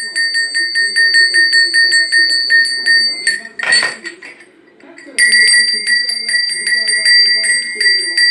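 A large brass livestock-type bell shaken by hand, its clapper striking rapidly and evenly at about seven strokes a second over a clear, steady ring. It rings for about three seconds, stops, then rings again for about three seconds after a pause of about two seconds.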